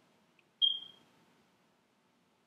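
A single short, high-pitched steady tone a little over half a second in, fading away within about half a second; otherwise near silence.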